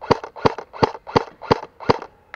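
Airsoft rifle firing single shots in quick succession: six sharp, evenly spaced shots, about three a second.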